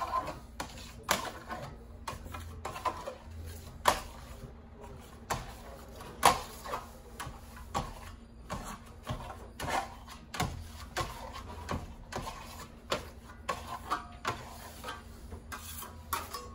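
Metal-bladed Venetian plaster trowel scraping across a plaster sample board, spreading wax in circular strokes: irregular short scrapes and clicks, a few each second.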